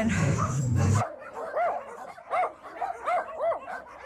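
A dog whining, about six short rising-and-falling cries over three seconds, after a low rumble in the first second.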